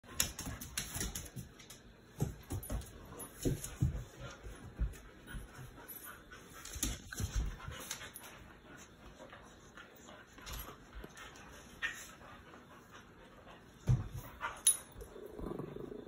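Two dogs play-wrestling on a wood floor: irregular scuffling and soft knocks, with a couple of sharper thumps near the end.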